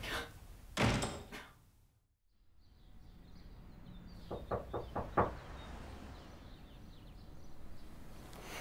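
Five quick knocks on a door, growing louder, about four to five seconds in. A brief noise comes about a second in, before a moment of near silence.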